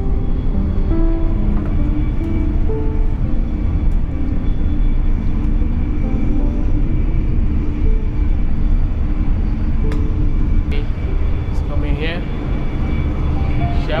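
Steady low rumble of a high-speed Eurostar train running, heard from inside the carriage. Over it is background music with short melodic notes, mostly in the first half.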